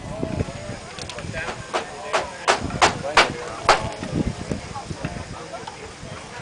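A quick run of about eight sharp clicks or pops over two to three seconds, getting louder toward the middle, with faint voices in the background.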